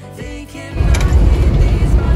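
Music with singing, broken about three-quarters of a second in by a much louder, steady low rumble of a bus driving on the highway, heard from inside the cab, with the music still playing under it.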